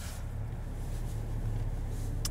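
Steady low drone of a Chevrolet Silverado's 3.0-litre Duramax inline-six turbo diesel, heard from inside the cab.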